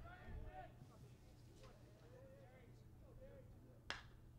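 Faint distant voices murmur, then near the end comes a single sharp crack of a baseball bat striking a pitched ball, which is popped up into the air.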